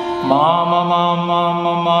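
Male Carnatic vocalist entering about a quarter second in with a short upward slide, then holding one long note on a swara syllable. A steady tambura drone runs underneath.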